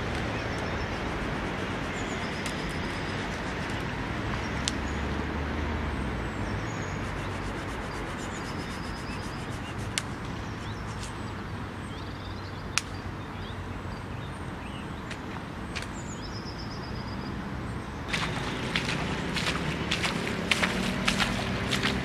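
Steady outdoor background of distant road traffic, with short bird chirps scattered through it and a few sharp clicks. Near the end, footsteps of wellington boots through waterlogged grass come close.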